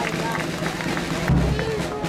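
Music with a strong low beat coming in about a second in, under voices and the noise of a crowd.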